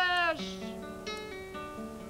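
A held sung note falls away about half a second in, and then an acoustic guitar plays alone, picking single notes and chords at a steady pace.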